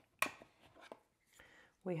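Small plastic charger and its cable being handled and lifted out of a cardboard packaging box: one sharp click shortly after the start, then a few faint clicks. A voice begins near the end.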